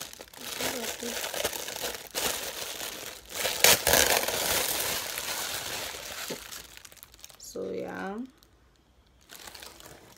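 Packaging crinkling as it is handled and pulled off a white oval serving dish: a continuous rustle with one sharper, louder crackle about four seconds in, dying away after about seven seconds.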